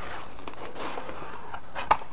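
Cardboard shipping box being opened by hand: rustling and scraping of the flaps, with one sharp click near the end.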